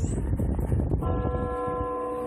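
A steady, held tone with a clear pitch starts about a second in and carries on unchanged, over a low rumble and crackling handling noise.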